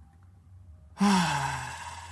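A man breathing out a deep breath as a voiced sigh, starting suddenly about a second in, its pitch falling as the breath trails off.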